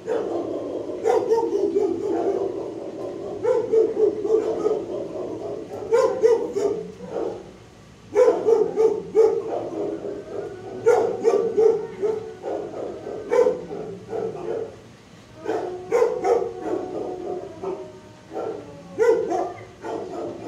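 Kennel dogs barking in repeated bouts, mixed with drawn-out, howl-like calls, with short lulls between bouts.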